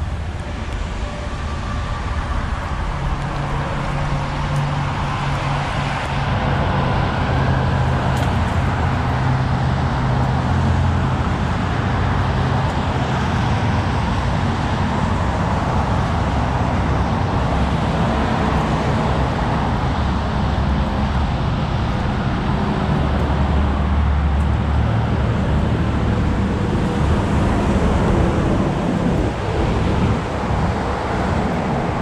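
Outdoor air-conditioning condensing unit running: a steady fan and compressor hum with a low drone. It grows louder over the first few seconds as the unit is approached, then holds steady.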